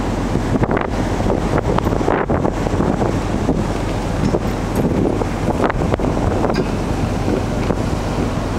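Wind buffeting the microphone on the open deck of a passenger ferry under way, gusting unevenly over a steady low drone from the ship.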